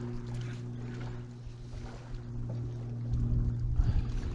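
Steady low hum of a bow-mounted electric trolling motor on a bass boat. From about three seconds in, wind buffets the microphone.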